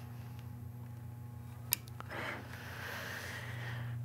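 A single sharp click about two seconds in, the DC power cable's plug being pushed into the back of a Xiegu G90 HF transceiver, with soft rustling of hands and cables after it. A steady low electrical hum runs underneath.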